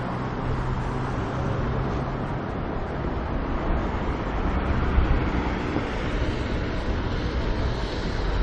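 Steady city street noise: a wash of traffic with a low hum early on and a stronger low rumble about five seconds in.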